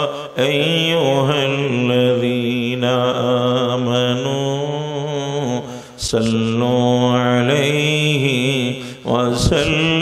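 A man's voice chanting Arabic blessings on the Prophet in long, drawn-out melodic phrases. There are three phrases, with short breaks about a third of a second in, at about six seconds and near nine seconds.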